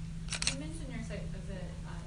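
A short breathy laugh, then faint speech from a voice away from the microphone, over a steady low hum.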